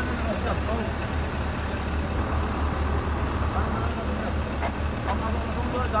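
Indistinct men's voices talking over a steady low rumble.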